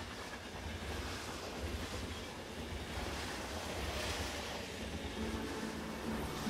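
Outdoor city ambience: a steady low traffic rumble with hiss, swelling about four seconds in.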